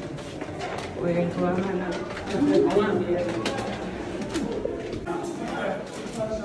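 Several people talking at once: overlapping, indistinct voices of a group, with scattered light clicks.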